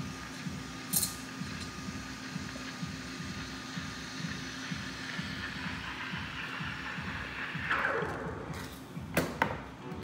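Espresso machine steam wand hissing steadily in a pitcher of cold milk, heating and frothing it, with its tone dropping briefly about eight seconds in. Two sharp clicks follow near the end, over background café music with a steady beat.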